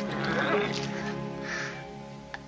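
Orchestral background score with long held tones, with two short breathy sounds over it: one near the start and one about a second and a half in.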